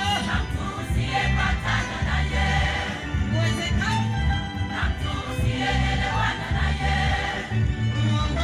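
A women's choir singing together over a deep, repeating low beat.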